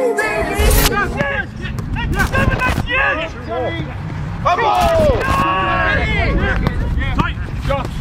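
Footballers calling and shouting to one another during a training drill, over a low rumble, with a few sharp knocks of the ball being kicked.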